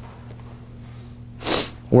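Quiet room tone with a steady low hum, broken about a second and a half in by one short, sharp breath drawn in through the nose just before a man starts speaking.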